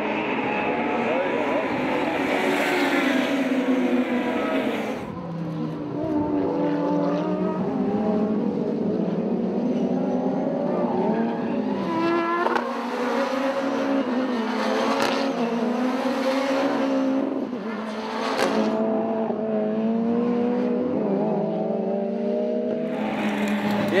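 Touring race cars running at racing speed, their engines revving up and down through the gears in several short shots, with the sound changing abruptly between them.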